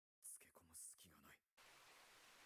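Faint, breathy male speech from the anime's dialogue, then, about one and a half seconds in, a steady hiss of rain sets in abruptly.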